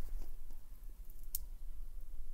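Quiet room tone with a steady low hum and a single short click a little over a second in.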